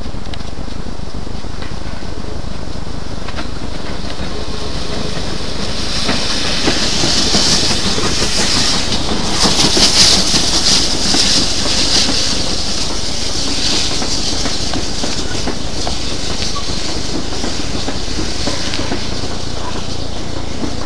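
Ex-GWR tank steam locomotive passing close below with its train, a loud hiss of steam swelling to a peak about halfway through as the engine goes by, then the coaches rolling past with the clickety-clack of wheels on rail joints.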